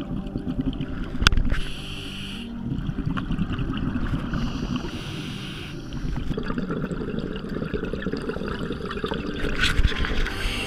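Scuba regulator breathing heard underwater: a steady low rumble, broken twice by about a second of hissing, bubbling exhalation. There is a sharp knock about a second in.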